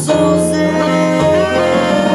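Live small-group jazz: a woman singing over two saxophones and a plucked double bass.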